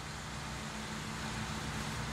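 Steady background hiss with a faint low hum and no distinct sound events: outdoor ambience under a public-address system.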